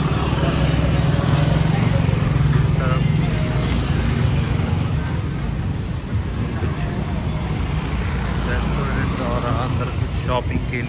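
Street traffic of motor scooters and cars passing close by, a steady engine hum that is loudest in the first few seconds, with people talking on the pavement.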